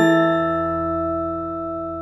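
The last stroke of gamelan music ringing out: several metallic tones held together over a low gong hum, fading slowly with no new strikes.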